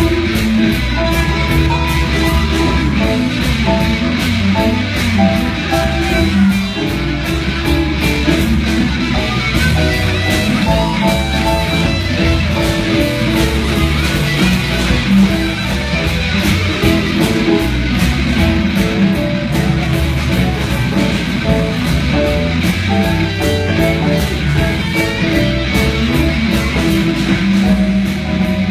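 Live blues band playing an instrumental passage: electric guitars over drums, with a steady cymbal beat.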